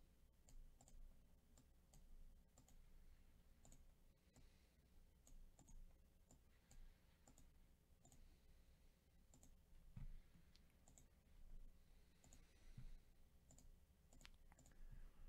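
Faint computer mouse clicks at irregular intervals, about one a second, over quiet room tone, with a slightly heavier knock about ten seconds in.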